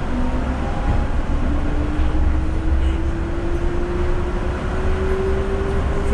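Yurikamome rubber-tyred automated guideway train running, heard inside the car: a steady low rumble with a motor whine that rises slowly in pitch.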